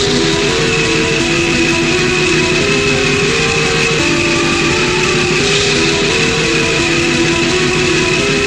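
Raw black metal: heavily distorted guitars in a dense, noisy wall of sound, playing a slow melody that steps from note to note, with a steady high ringing tone held over it.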